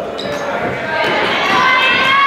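Basketball game in a reverberant gym: the ball bouncing, then high squeaks of sneakers on the hardwood floor and shouting voices, getting louder about halfway through.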